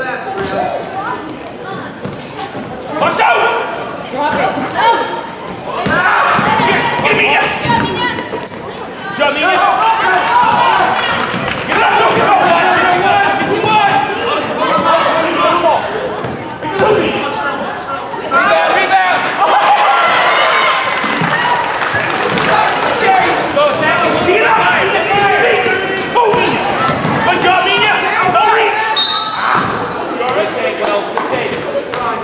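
Basketball game sounds in a gym: a ball bouncing on the hardwood court amid indistinct shouting voices, echoing in the large hall.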